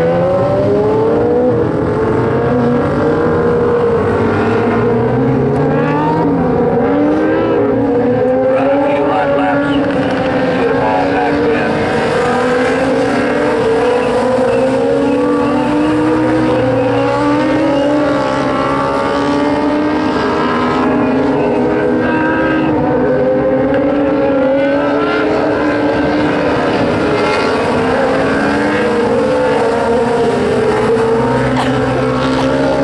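Several dwarf race cars running at racing speed on a dirt oval, their motorcycle-derived engines overlapping, with engine notes rising and falling continuously as the cars accelerate out of the turns and pass.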